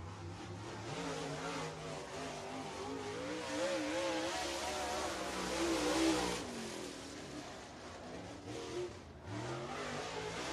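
Dirt super late model race car's V8 engine at speed on a lap of the track. Its pitch wavers up and down. It grows louder to a peak about six seconds in as the car comes by, then fades, and a fresh rise comes near the end.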